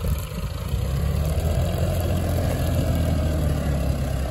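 VST Zetor 5011 tractor's diesel engine running steadily under load while pulling a disc harrow through dry field soil in third gear, low range.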